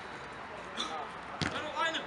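A football kicked once, a sharp thud about one and a half seconds in, over players' voices shouting.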